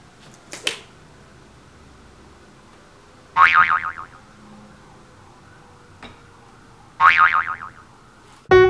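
Comedy sound effect: a short boing-like twang falling in pitch, heard twice about three and a half seconds apart. A couple of faint clicks come just after the start.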